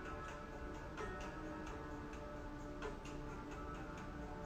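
Soft meditation background music: sustained, held tones with light ticking clicks at a fairly regular pace.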